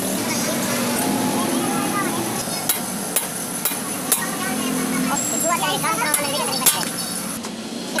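Steel pliers working at the metal bush eye of a Corolla suspension arm, giving a few sharp metallic clicks and taps over steady workshop noise.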